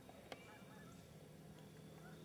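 Faint, distant honking of geese over quiet woods, with a single sharp click about a third of a second in.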